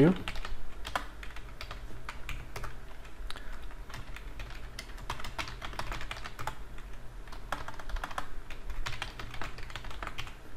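Typing on a computer keyboard: a run of irregular keystrokes at varied pace, over a low steady hum.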